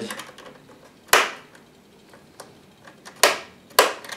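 Hand screwdriver working a screw into the rear panel of a Synology DS218play NAS case: three sharp clicks, one about a second in and two close together near the end, with faint ticks between.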